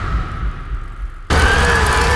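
Horror-trailer sound design: a low boom fades out, then just past a second in a sudden loud, harsh noise hit begins, carrying a faint tone that slides slightly upward.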